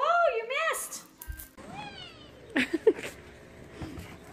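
A cat meowing: a quick run of short rising-and-falling meows in the first second, then another falling meow about two seconds in.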